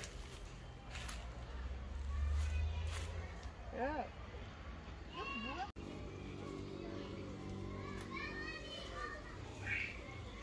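Faint, distant children's voices, shouting and calling in short rising-and-falling cries, with a low rumble about two to three seconds in.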